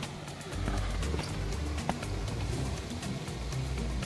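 Background music with a low bass line changing notes every half second or so.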